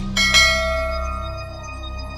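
Bell chime sound effect of a subscribe-button animation: struck a fraction of a second in, loudest about a third of a second in, then ringing on and fading slowly. A low music bed continues underneath.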